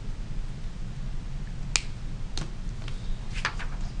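Paper and marker handling on a desk: one sharp click just under two seconds in, a fainter click shortly after, then a few softer ticks and rustles as a sheet of paper is lifted. A steady low hum runs underneath.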